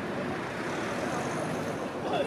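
Steady road traffic noise, an even hiss with no distinct events.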